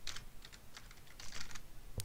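Typing on a computer keyboard: a few quiet keystrokes, with a quick run of them late on.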